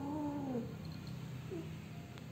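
Female cat in heat giving a low, drawn-out yowl that arches in pitch and fades about half a second in, then a short second call about halfway through. A steady low purr runs underneath.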